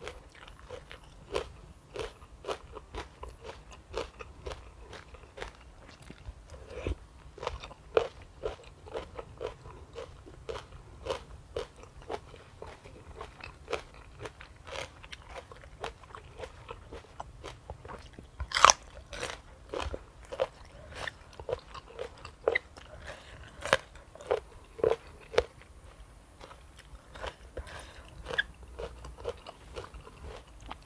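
Close-up chewing of crunchy tam sai tan, a spicy pork intestine salad: a run of quick crisp crunches and bites, with one sharper, louder crunch a little past the middle.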